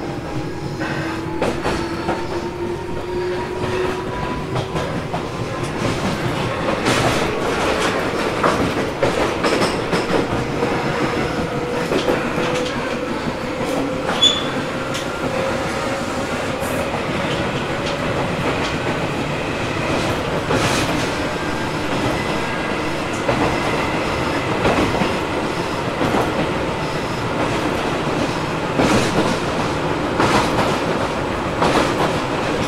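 Tobu 800 series electric train motor car running, heard on board: the whine of its traction motors and gears rises steadily in pitch through the first half as the train picks up speed, then levels off. Wheels knock over rail joints here and there throughout.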